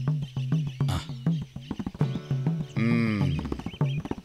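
Film background score: a steady low note under a quick, even percussive ticking, then pitched, wavering melodic tones in the last second and a half.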